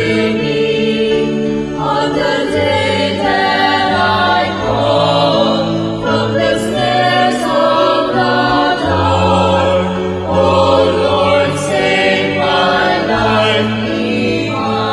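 Choir singing a slow hymn, with long held notes that move to a new pitch every second or two.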